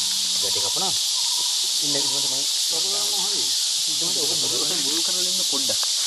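Steady, loud high-pitched insect chorus, an unbroken hiss that holds the same level throughout, with low voices murmuring now and then underneath.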